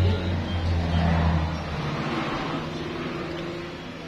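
A motor vehicle passing on the road outside the house: a deep engine rumble that is loudest at first, cuts off after about two seconds, and then fades away.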